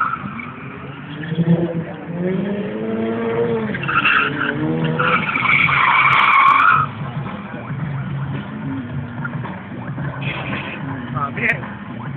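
Drift car's engine revving in repeated rising sweeps, then a loud tyre squeal from about four to seven seconds in as the car slides sideways.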